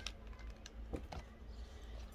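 Faint rustling and a few light clicks as a torn foil card-pack wrapper and jumbo trading cards are handled and slid out, with a couple of small ticks about a second in.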